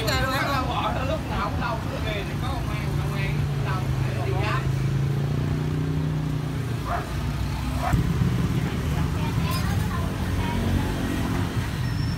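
Street traffic: a nearby vehicle engine runs with a steady low hum for several seconds, and the sound shifts about eight seconds in as traffic keeps rumbling past.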